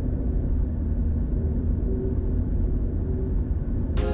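Car driving on a city road: a steady low rumble of engine and tyre noise, with little high-pitched sound in it.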